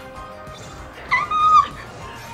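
Fight-scene music from a cartoon's soundtrack, with a short high-pitched yelp-like cry a little past a second in that lasts about half a second and is the loudest sound.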